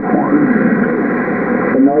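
Single-sideband voice received on a Yaesu HF transceiver and heard through its speaker: garbled, overlapping voices of stations calling at once, over band noise, with the thin, narrow sound of a radio channel. Near the end the noise drops and one clear voice begins.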